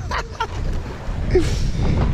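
Low rumble of wind buffeting the microphone over open water, with a few faint clicks early on.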